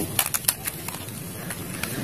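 A few quick, sharp plastic clicks and clatters in the first half-second, with a couple of fainter ones near the end: toy guns being handled, one set down and another picked up from the dirt.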